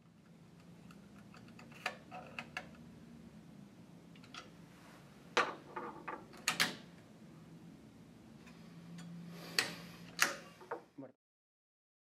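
Scattered light clicks and knocks of hand work on a Zebra 140Xi4 label printer's printhead assembly, over a faint steady low hum. The sound cuts off about a second before the end.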